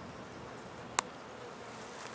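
Honey bees buzzing around a cluster on a wooden hive box, a steady faint hum. There is a single sharp click about a second in.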